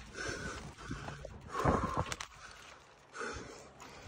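A man breathing hard, three heavy exhales about a second and a half apart, with footsteps and scuffing on a dirt trail.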